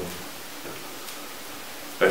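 A pause in speech: steady hiss of room tone and recording noise, with the last of the voice dying away at the very start.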